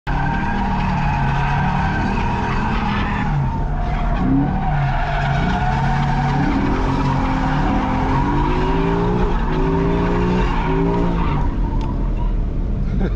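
Ford Mustang drifting: the rear tyres squeal with a steady high tone while the engine revs rise and fall repeatedly under the throttle. The squeal stops just before the end.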